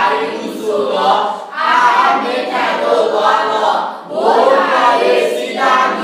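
A church congregation singing together in phrases of about a second each, with a short break about four seconds in.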